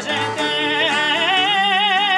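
A male singer in Sardinian canto a chitarra, 'canto in re', sings a high, ornamented line that settles into a long held note with a wavering vibrato about three quarters of the way in. An acoustic guitar accompanies him unamplified.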